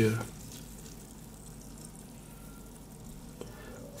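Faint, steady fizzing of baking soda reacting in a glass of citric-acid solution, with small bubbles crackling as the pH meter is held in the glass.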